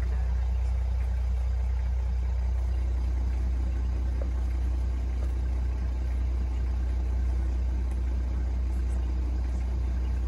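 A game-drive vehicle's engine idling, a steady low rumble.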